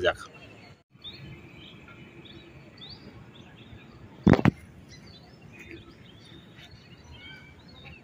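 Quiet outdoor ambience with scattered bird chirps, and one brief loud knock about four seconds in.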